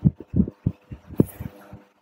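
A quick, irregular run of soft low thumps, about eight in two seconds, over a faint steady hum.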